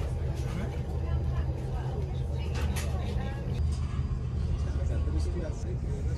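Steady low rumble of a parked airliner's cabin, with faint voices of other passengers and a few light clicks.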